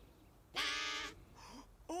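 A single held, nasal-sounding note from a cartoon pipe organ's singing pipe, starting about half a second in and lasting about half a second, after a near-silent moment.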